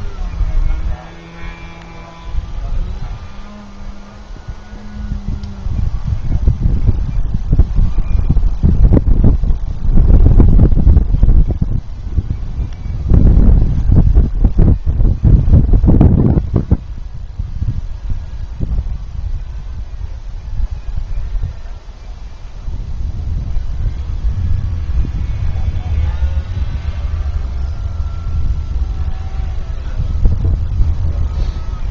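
Wind buffeting the microphone, a gusty low rumble that is heaviest from about nine to seventeen seconds in and eases after that.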